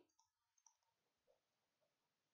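Near silence, broken by a few very faint, brief clicks.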